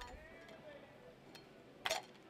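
A metal cup clinking once, short and sharp, near the end, after a fainter tick.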